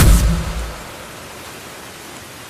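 A lofi track's last low bass note dies away within the first second, leaving a steady hiss of rain ambience laid under the mix.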